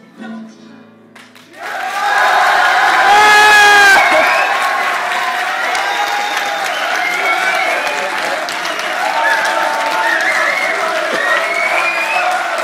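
A song for voice and acoustic guitars ends on a quiet held note. About a second and a half in, an audience breaks into loud applause with cheering and shouting, and it keeps going.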